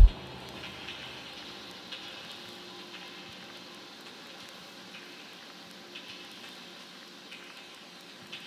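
Quiet breakdown of an electronic dance track: the pounding kick drum cuts out right at the start, leaving a faint hissing, crackling texture with soft held tones and a few scattered clicks.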